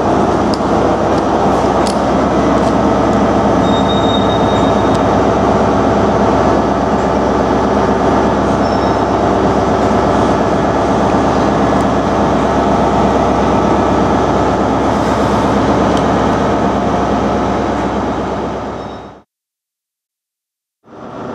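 Steady, unchanging drone of a stationary train's running equipment under a station roof, which cuts off abruptly near the end.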